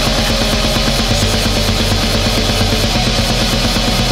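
Black metal, loud and dense: fast, steady drumming under distorted guitars and bass.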